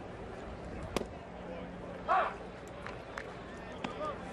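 Ballpark crowd background. About a second in, a pitched baseball lands with one sharp pop. About a second later a single voice gives a short loud shout, the loudest sound, and a few faint clicks follow; the pitch counts as a strike.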